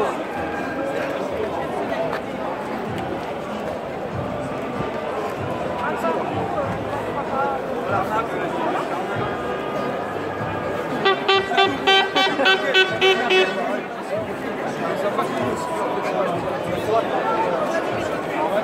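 Marchers' voices chattering, with a plastic horn blown in a rapid series of short, loud toots for a couple of seconds about eleven seconds in.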